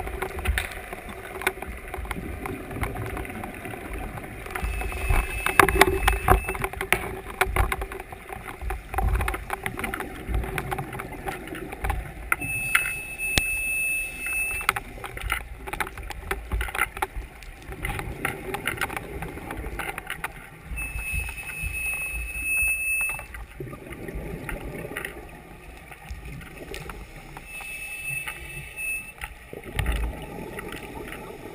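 Underwater rush of water around the camera with frequent sharp clicks and crackles. Over it, an electronic alarm beep held for about two seconds sounds four times, roughly every eight seconds, the first one fainter.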